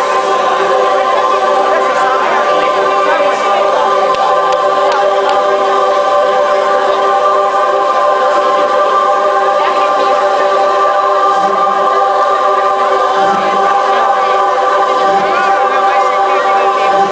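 Live electronic music: a sustained, choir-like synthesizer chord of several notes held steady, heard through the venue's PA. From about eleven seconds in, soft low pulses join it, about one every two seconds.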